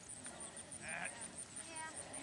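Foxhounds giving two short, high yelps, one about halfway through and one near the end, faint over the field.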